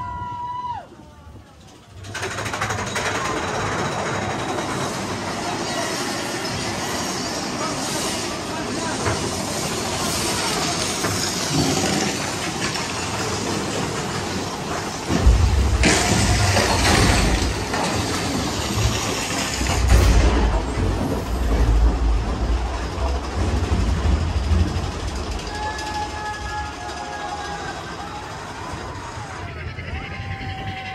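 On board the Big Thunder Mountain Railroad mine-train roller coaster: wind rushing over the microphone and the train rattling along the track. The rush sets in a couple of seconds in, and a heavier, louder rumbling stretch comes about halfway through.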